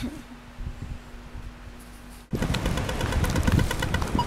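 Quiet room tone with a faint steady hum, then, after a sudden change a little over two seconds in, loud street traffic noise with a fast run of short, evenly spaced high ticks.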